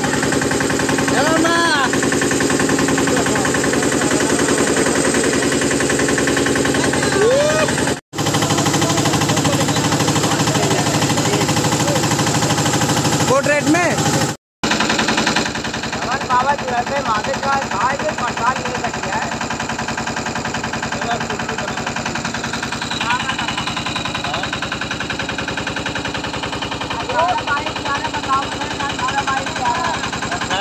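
Small river boat's engine running under way, a fast, even knocking beat that holds steady. The sound drops out twice for a moment and is quieter in the second half.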